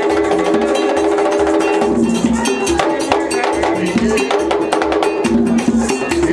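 Vodou ceremony drumming: hand drums beaten in a fast, dense rhythm with a struck metal bell, under a group singing a chant.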